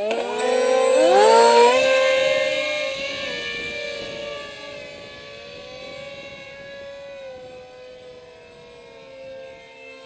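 Radio-controlled model Alpha Jet's ducted-fan whine, rising sharply in pitch over the first second and a half, then holding a steady high whine that fades slowly as the jet flies away. Two close whines at slightly different pitches can be heard later on.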